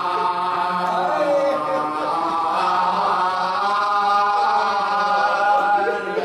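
A man's voice chanting a devotional salam in long, drawn-out held notes that bend slowly in pitch.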